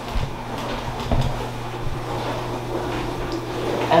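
Dishwasher running with a steady hum and wash noise, with a few soft low thumps near the start and about a second in.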